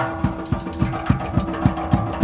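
Acoustic drum kit played live, the kick drum keeping a steady beat of about three to four strokes a second, with cymbals on top. Sustained held notes of a backing track come in at the start and run under the drums.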